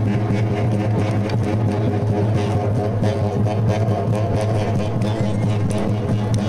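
Tarahumara dance music: large frame drums beaten in a fast, steady rhythm that blends into a continuous low drone.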